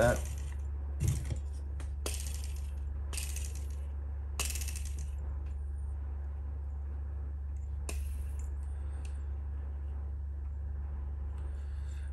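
Handling of a small RC helicopter tail assembly and its toothed rubber drive belt: about six short rustles and light metallic clinks, spaced a second or more apart, over a steady low hum.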